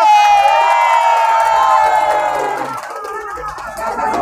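Crowd cheering, led by a long high-pitched held cry that wavers and dies away after about three seconds.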